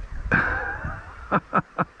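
A man laughing: one longer laugh, then a run of short bursts about a quarter-second apart in the second half.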